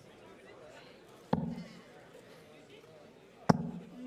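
Steel-tip darts striking a bristle dartboard: two sharp thuds about two seconds apart, over a faint background murmur.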